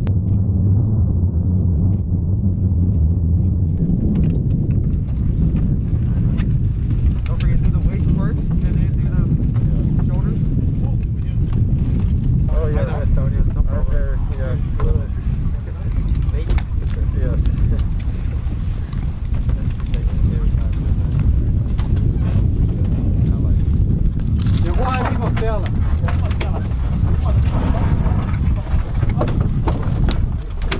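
Steady low rumble of wind buffeting the microphone in an open field. Voices break through twice, once in the middle and once near the end.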